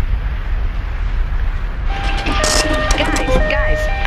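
A deep, steady rumbling roar with hiss, over ashy eruption footage. About two seconds in, a simple electronic tune of held beeping notes stepping between a few pitches starts up, with voices under it.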